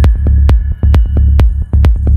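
Dark progressive psytrance: a heavy rolling bassline under a steady electronic kick drum, a little over two beats a second, with a thin high synth tone held above.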